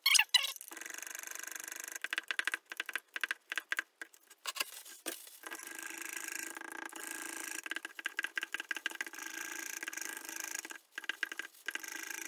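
Flat plastic stirring stick scraping round the inside of a plastic mixing cup as epoxy resin is stirred: a fast, steady scratchy rasp. It opens with a sharp knock of the stick in the cup, comes in broken strokes for a few seconds, then runs evenly until it stops near the end.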